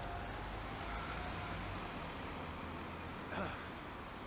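Wind rumble on the microphone of a moving bicycle with steady road and traffic noise behind it, and one short falling squeak about three and a half seconds in.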